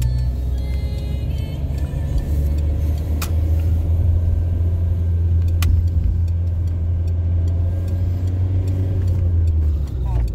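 A car's engine and road noise heard while driving: a steady low drone whose pitch drops slightly about two seconds in, with a few faint clicks.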